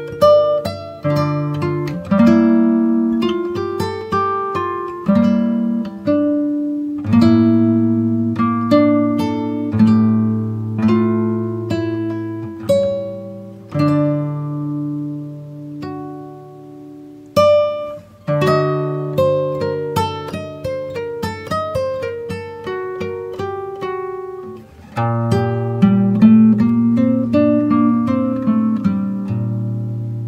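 Background music: a tune of plucked guitar notes, each struck sharply and left to ring out, with lower bass notes held beneath.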